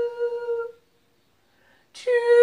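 A long held melodic note fades out less than a second in, followed by about a second of silence before the next phrase begins.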